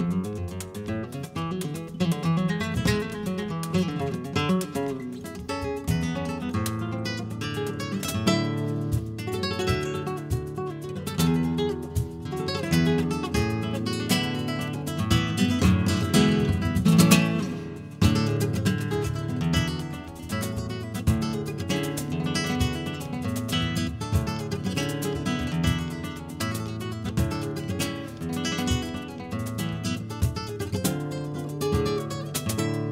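Flamenco guitar playing a guajira, picked notes and strummed chords, with a cajón keeping time underneath. The loudest flurry comes a little past halfway, followed by a brief drop in level.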